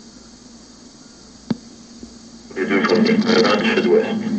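Hiss of an old radio broadcast recording during a pause, with a single click about a second and a half in. About two and a half seconds in, a loud, garbled voice comes back in.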